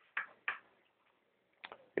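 Three faint, short clicks in a quiet room, two in the first half second and one near the end: handling noise from the hand-held phone and small objects being moved.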